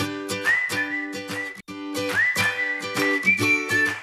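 Light jingle music: a whistled tune with gliding held notes over a rhythmic plucked-string accompaniment. The music cuts out for a moment about one and a half seconds in, then starts again.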